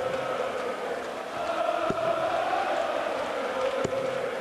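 Large darts crowd chanting together in a reverberant hall, a steady massed sung chant, with a few faint thuds about two seconds apart.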